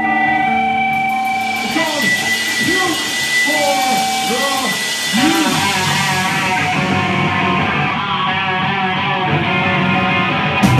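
Amplified electric guitar and bass noodling on stage between songs: sustained high ringing tones and several notes that bend up and fall back, over a steady wash of noise.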